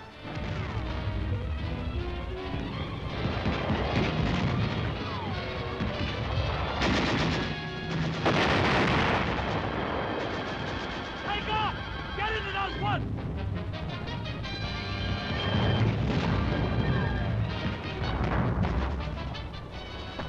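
Battle sound effects: gunfire and artillery explosions, with a long loud blast about seven to nine seconds in.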